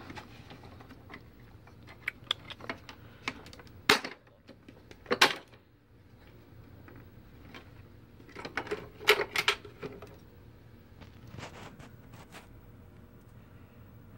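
Scattered plastic clicks and knocks from handling a Sanitaire SC679J upright vacuum as it is laid down to check its underside for a suspected clog. Two sharp knocks come about four and five seconds in, and a cluster of clicks near nine seconds, over a faint low hum.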